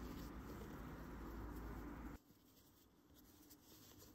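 Faint scratchy rustling of fingers rubbing and pushing canvas fabric, cutting off suddenly about two seconds in to near silence.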